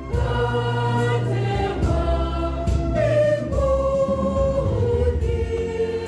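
A church choir of men and women singing a slow hymn, holding each note for a second or more before moving to the next.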